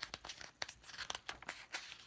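Paper pages of a picture book being handled and turned: a quick run of soft rustles and crinkles.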